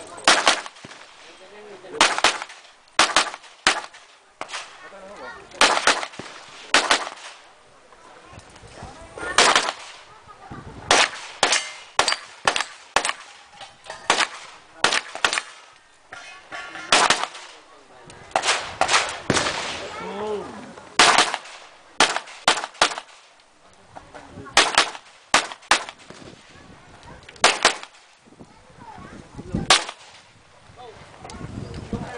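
Handgun shots fired in strings during a practical pistol stage, mostly in quick pairs, with short pauses between groups as the shooter moves from target to target.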